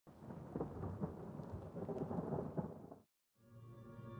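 Rumbling noise with scattered sharp crackles, like rain and thunder, cutting off suddenly about three seconds in. After a brief silence, a steady droning chord of music fades in.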